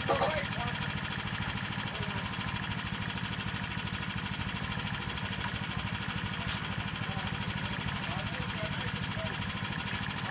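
An engine idling steadily, with distant voices calling out over it and a brief louder shout right at the start.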